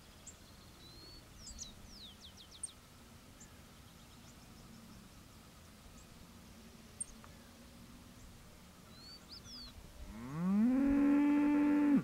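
Faint high bird chirps with quick downward-sweeping notes, then about ten seconds in a cow lows loudly. The moo rises in pitch, holds steady for about two seconds and then cuts off suddenly.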